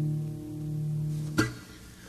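Acoustic guitar's closing chord ringing steadily, cut off by a sharp click about one and a half seconds in, after which it dies away: the end of a song.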